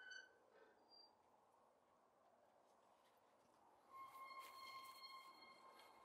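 Faint soundtrack tones over near silence: a short high pitched blip at the start, then a steady held tone from about four seconds in that fades away.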